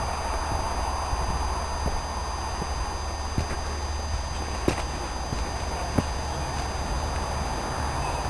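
Steady outdoor background noise with a low rumble, broken by four or five faint knocks spaced a little over a second apart.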